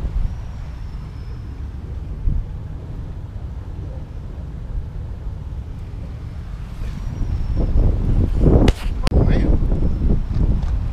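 Wind buffeting the microphone as a steady low rumble, with a couple of sharp knocks and faint voices near the end.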